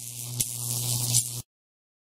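Logo transition sound effect: a steady hissing whoosh over a low hum, with a small click in the middle. It cuts off abruptly about a second and a half in, leaving dead silence.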